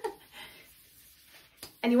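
Near silence: room tone, with one faint click just before a woman starts speaking again near the end.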